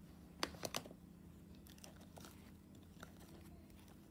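Plastic screw-on lid of an Elmer's Gue slime jar being twisted open: a few faint, sharp clicks in the first second, then faint handling sounds.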